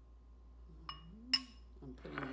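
A metal spoon clinks twice against a stainless steel measuring cup and a glass bowl while shredded cheese is scooped. The second clink is louder and rings briefly.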